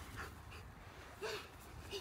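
A toddler's short vocal sounds, twice, each a brief rising-then-falling note, over faint outdoor background.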